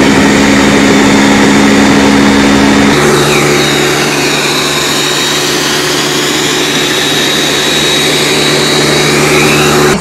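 Ninja countertop blender running at high speed, blending leafy greens, apple and water into a green juice. About three seconds in, its steady hum drops to a lower pitch and gets slightly quieter. It stops abruptly at the end.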